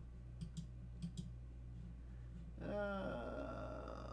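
A few quick computer mouse clicks over a low steady hum, followed about two and a half seconds in by a drawn-out hesitant "uh".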